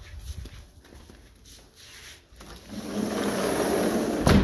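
Footsteps on hard floor, then a sliding glass patio door rolling along its track. The rolling is a loud, steady rush that starts a little past halfway and carries on to the end.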